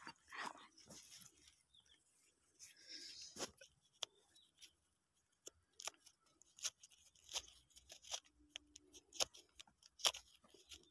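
Faint, irregular clicks and scrapes of a wooden stick digging packed soil out of a small engraved metal pot, the stick now and then tapping the metal rim and wall.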